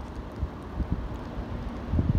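Wind buffeting a phone microphone: a steady low rumble with no tone in it.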